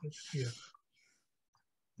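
Speech only: a man briefly says "yeah", followed by silence.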